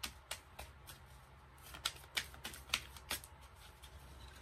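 Tarot deck being shuffled by hand: a run of quick, irregular card snaps and slaps, the loudest coming about two to three seconds in.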